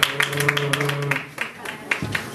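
Scattered hand claps from a small audience, several a second and unevenly spaced. A steady held tone, a voice or an instrument note, sounds under them for about the first second.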